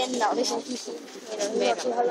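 Speech: people talking close to the microphone.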